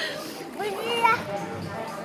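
Children's voices and play noise in an indoor playground. A child's voice rises and falls through the first second, over a general hubbub of children at play.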